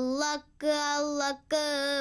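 A boy singing unaccompanied, holding sustained notes in short phrases with two brief breaths between them.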